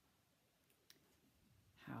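Near silence: quiet room tone with one faint click about a second in, before a woman starts speaking near the end.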